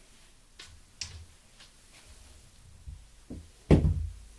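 A pair of dice thrown down a felt craps table: a few light clicks early, then a couple of soft thuds as they land, and one loud knock near the end as they hit the table and bounce to a stop.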